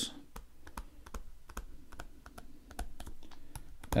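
Stylus tapping and ticking on a tablet's writing surface as a word is handwritten: a faint string of light, irregular clicks.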